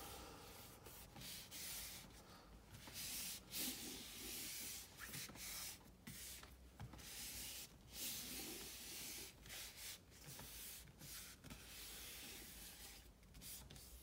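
Hands smoothing a sheet of cardstock flat, palms sliding and rubbing over the paper in a run of faint, irregular swishes.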